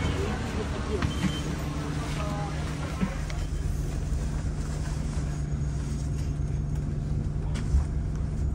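Shuttle bus engine running with a steady low hum, heard from on board, with a few light clicks and a low thump near the end.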